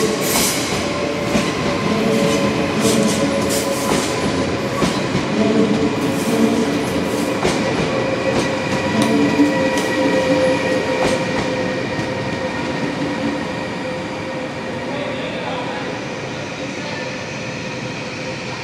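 NS VIRM double-deck electric train rolling slowly into the station, its wheels clicking over rail joints and points, over a steady high whine. The clicking thins out and the sound slowly fades over the last few seconds as the train draws away and slows.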